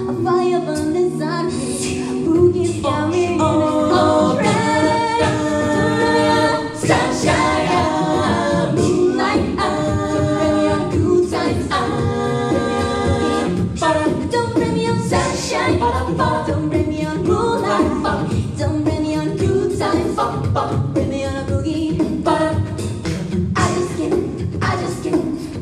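A cappella vocal group singing an upbeat pop-funk cover live in close multi-part harmony through microphones, with a beat kept by vocal percussion.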